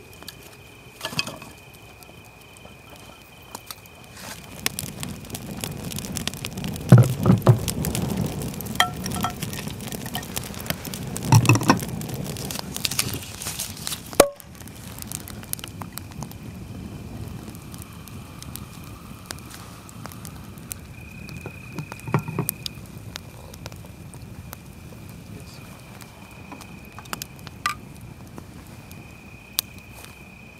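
Wood campfire crackling and popping, with a steady high insect trill behind it. For several seconds in the first half there are heavier knocks and rumbling as wood is handled at the fire.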